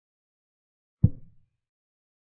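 A chess program's move sound effect: a single short thud about a second in, dying away within half a second. It marks a piece being moved to an empty square, a quiet move rather than a capture.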